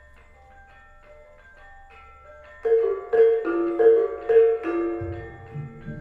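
Gamelan ensemble playing: soft, sparse ringing notes on bronze metallophones, then about two and a half seconds in the metallophones come in loudly with strong repeated strikes, and low beats join near the end.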